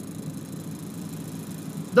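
Steady low rush of small waves breaking on a sand beach.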